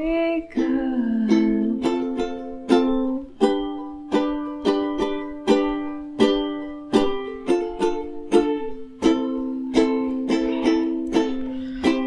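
Ukulele strumming the chords F, G and A minor, each strum ringing and fading before the next, about one to two strums a second and a little quicker in the second half.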